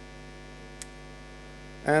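Steady electrical mains hum with a buzzy stack of tones, from the sound system or recording chain, heard in a gap in the speech. A single faint click comes a little before halfway.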